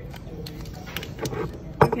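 A metal spoon tapping and clinking against a drinking glass as instant coffee granules are tipped in: a few light taps, then one sharper clink near the end.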